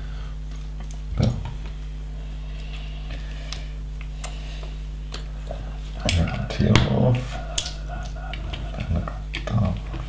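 Loose plastic LEGO bricks clicking and rattling as a hand rummages through a pile of parts, with short irregular clicks throughout. A low voice murmurs briefly about six to seven seconds in.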